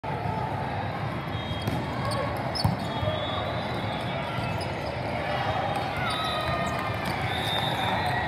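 Volleyballs being hit and bouncing in a large indoor sports hall over steady chatter of many voices, with one sharp ball smack about two and a half seconds in. Short high squeaks of sneakers on the court come and go.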